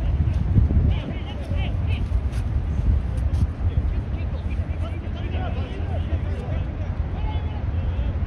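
Distant shouts and calls of soccer players across the pitch, short and scattered, over a steady low rumble.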